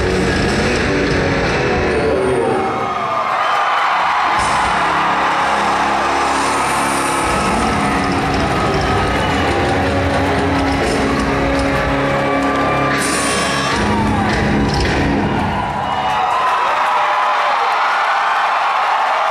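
Live rock band with electric guitar and drums playing the closing chords of a song over a loudly cheering and whooping crowd. The band's sustained notes die away in the last couple of seconds, leaving the crowd cheering.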